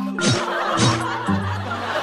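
Studio audience laughing, with background music playing underneath.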